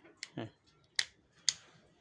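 Sharp clicks from a finger pressing on a bicycle's LED headlamp, three in all, the last two about half a second apart.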